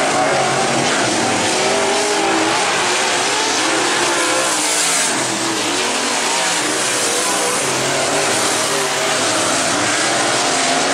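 Dirt-track modified race cars' V8 engines running hard in a heat race. Several engine notes rise and fall over one another as the cars throttle on and off around the oval.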